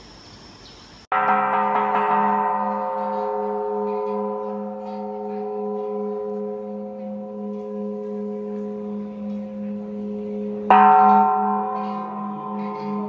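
Large bronze Buddhist temple bell struck twice with a wooden mallet, about a second in and again near the end. Each stroke rings on at length in several overlapping tones over a wavering low hum.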